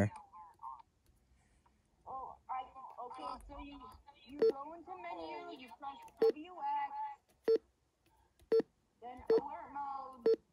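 A RadioShack 12-996 weather radio gives short single key beeps as its menu buttons are pressed, about five of them in the second half, under faint background voices.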